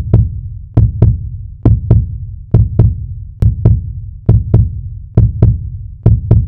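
Deep double thumps in a heartbeat rhythm, a pair just under once a second, each thump with a booming low decay, as in a heartbeat sound effect opening a music mix.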